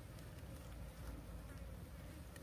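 Faint, steady buzzing of insects over a low rumble.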